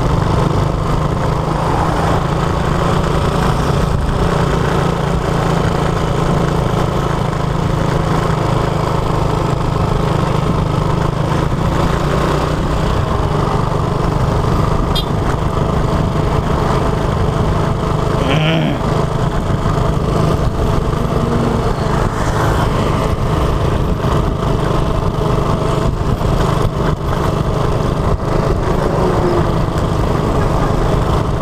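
A small motorcycle's engine running steadily at cruising speed, with road and wind noise.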